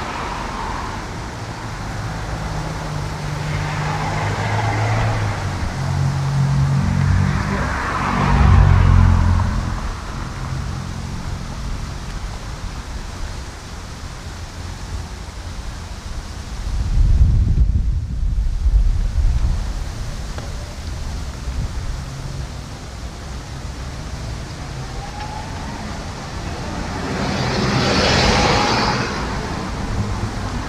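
Street traffic: cars driving past one after another, each swelling and fading, the loudest passes about 8 seconds and 28 seconds in, with a deep low rumble about halfway through.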